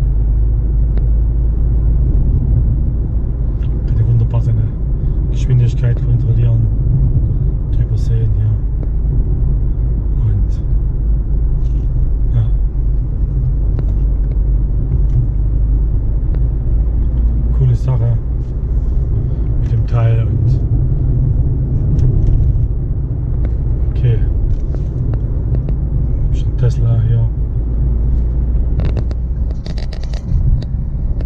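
Steady low engine and road rumble inside a car's cabin while driving at around 40–50 km/h, with scattered brief clicks over it.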